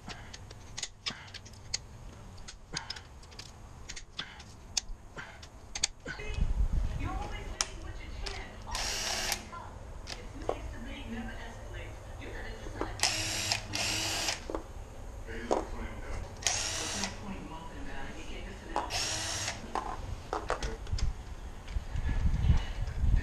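Cordless ratchet spinning the connecting-rod cap nuts off an engine block after they have been broken loose half a turn by hand, in five short whirring runs, the longest about a second. Before the runs come scattered clicks and knocks of hand tools on the block.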